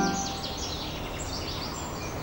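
Outdoor canal-side ambience: several birds chirping in short falling notes over a steady low background noise. The birds are busiest in the first second and a half.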